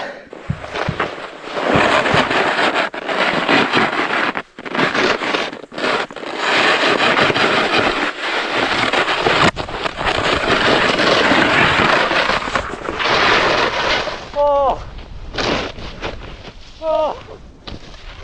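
Snowboard sliding and carving fast through deep powder snow, with wind rushing over the camera microphone: a loud, continuous rush with a few brief dropouts. It eases about fourteen seconds in, and two short vocal exclamations follow.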